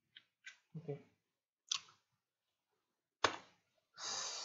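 Scattered clicks of a computer keyboard and mouse, about five in all, with the last and loudest a little over three seconds in.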